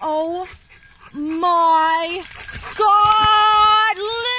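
Three long drawn-out vocal calls. The first falls in pitch, and the next two are each held on one note for about a second.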